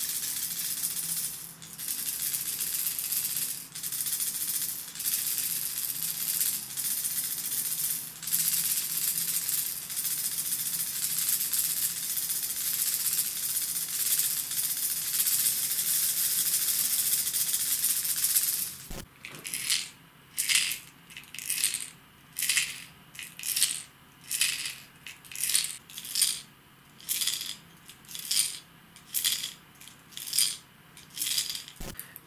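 Rattle chambers of hard-plastic diving wobblers (a Salmo Freediver and its Herman Tron replica), each holding small balls and one large ball, shaken by hand. For about two-thirds of the time they give a continuous fast rattle, then separate slower shakes, a little more than one a second. To the angler the two chambers sound slightly different.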